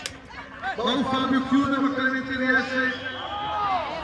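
Men's voices talking and calling out, with a single sharp knock at the very start.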